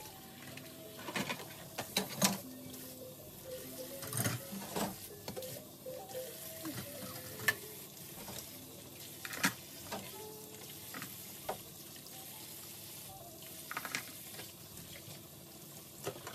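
Kitchen faucet running into the sink as dishes are rinsed, with scattered clinks and knocks of plates, a glass lid and plastic containers being handled and set in a dish rack.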